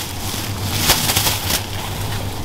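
Thin plastic produce bag rustling and crinkling as green plantains are put into it, with a few sharper crackles about a second in.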